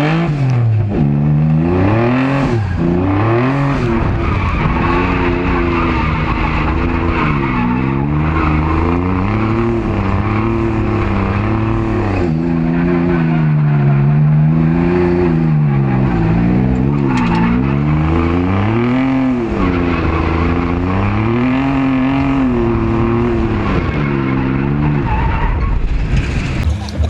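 Drift car's engine heard from inside the cabin, running loud with its revs rising and falling again and again through a drift run, over steady tyre-skid noise.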